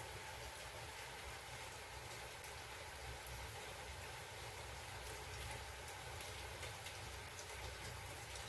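Faint scratching of a pen writing on notebook paper, with a few light ticks of the pen strokes, over a steady background hiss and low hum.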